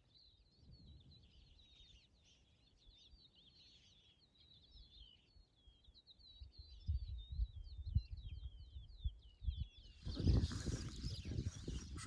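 Small birds chirping and singing outdoors, a continuous run of quick, high, twittering notes, with gusts of wind buffeting the microphone from about seven seconds in. About ten seconds in, a louder rushing noise takes over.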